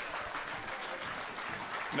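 A small seated audience clapping steadily.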